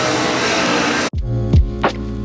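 City street noise for about a second, then a sudden cut to background music with steady bass notes and deep drum hits that drop in pitch.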